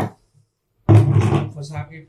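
A man talking, broken about a fifth of a second in by a short dead-silent gap. The talk resumes suddenly a little under a second in. No distinct hammer blow stands out.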